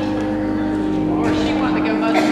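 People talking over a steady, held chord of low tones. The voices grow a little busier near the end.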